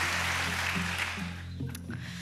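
Studio band playing a short musical cue with a steady bass line. Audience applause runs under it and dies away about one and a half seconds in.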